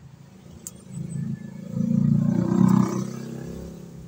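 A motor vehicle's engine passing by, a low rumble that swells to its loudest two to three seconds in and then fades.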